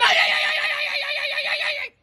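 A woman's loud, high-pitched scream, held for about two seconds with a fast wavering quiver, starting abruptly and cutting off suddenly near the end.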